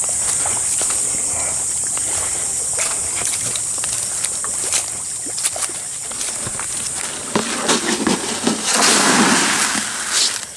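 Footsteps through grass and leaf litter over a steady high hiss, then near the end about a second of loud splashing at the pond's surface.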